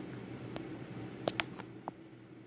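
Five short, sharp taps and clicks close to the microphone as a pencil with an eraser tip knocks against the phone being filmed with, the two loudest close together about a second and a quarter in. A low steady hum runs underneath.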